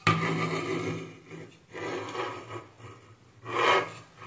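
Scratchy rubbing noise close to the microphone in three bursts: a long one at the start, a shorter one about halfway, and a brief one near the end.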